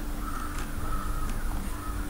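A bird calls three short times, with a couple of faint clicks over a steady low hum.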